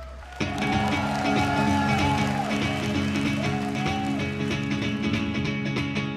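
A live rock band comes in at full volume about half a second in, with drums, bass and guitars. A harmonica plays a bending melody line over them.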